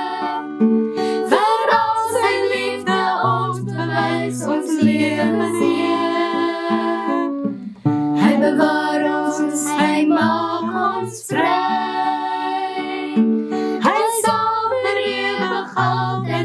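A woman and girls singing a hymn together, accompanied by a strummed acoustic guitar, with a short pause between phrases a little before halfway.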